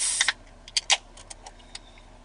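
A drink can pulled open: a sharp crack with a short hiss of escaping gas, followed by several small clicks.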